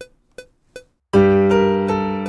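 Cubase metronome ticking three times at 160 BPM, then a software piano (Arturia Piano V2) comes in just past a second with a sustained G minor chord over a low G bass note, the opening of the track's chord progression being auditioned at the trial tempo of 160 BPM.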